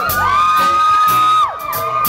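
Audience members whooping over a live band, with one long high 'woo' that drops off about a second and a half in and other shorter whoops overlapping it.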